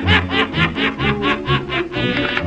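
A person laughing in a quick, even run of short "ha"s, about four to five a second, over background music with a steady bass beat.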